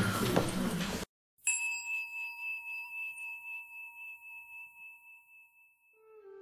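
A bell struck once, about a second and a half in, ringing with a clear high tone and fading away over about four seconds.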